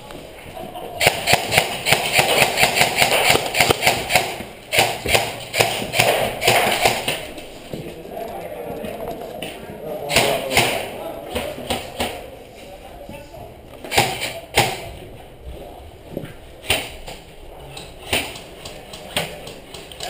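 Footsteps on a stone staircase: an irregular run of knocks and thuds, busiest in the first half.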